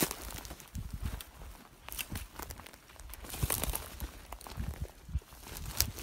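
Footsteps on dry ground and sagebrush brushing and crackling against legs and clothing as someone walks through the brush, with irregular rustles and crunches.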